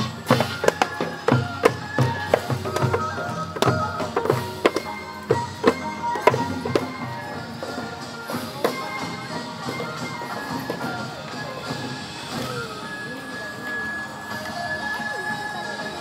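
Korean traditional folk music: drum strikes under a melody for the first half, then the drumming falls away and a softer melody goes on, ending on a long held high note.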